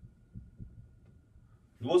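Faint low taps and knocks of a marker writing on a whiteboard, then a man starts speaking near the end.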